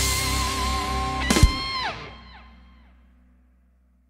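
Rock band ending a song: a held closing chord with a wavering guitar line, a final hit about a second and a half in, then the notes bend downward and the sound dies away to silence.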